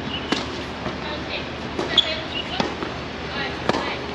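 Tennis ball hit with a racket on a serve, then a rally: sharp pops of racket on ball and ball on court about a third of a second in, around two seconds, and again just before the end.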